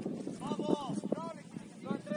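Shouted calls from voices on a football pitch during play: a few short, unclear shouts in the first half, then quieter.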